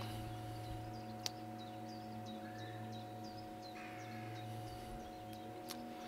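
Steady electrical hum at mains frequency with a row of steady overtones, and one click a little over a second in. A bird chirps faintly in short, high calls several times over it.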